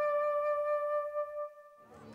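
Music: the song's last held note, one steady pitch with its overtones, fading away about a second and a half in.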